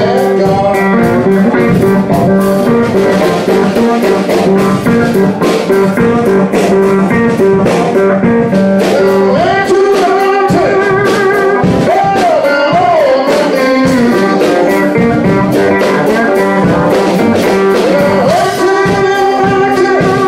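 Live blues band of electric guitars and drum kit playing a steady-beat blues number. A male voice sings over it, with wavering held notes about halfway through and again near the end.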